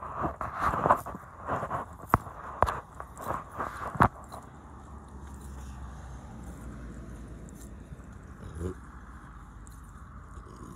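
Knocks, clicks and rubbing from a hand-held phone being swung round while walking, for about four seconds. Then a steady hum of road traffic, with one short low sound near the end.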